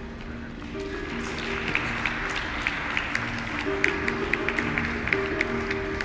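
Audience applause over background music. The clapping swells about a second in and keeps going under sustained musical notes.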